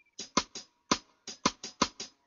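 Sparse drum strikes, about ten short sharp hits in a loose rhythm, forming the percussion intro of a reggae track.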